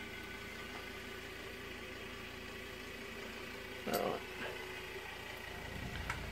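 A steady mechanical hum with several faint, unchanging tones running under it, like an engine or machine idling.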